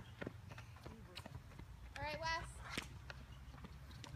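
Faint, irregular light taps of footsteps on a hard tennis court, with a brief faint voice about two seconds in.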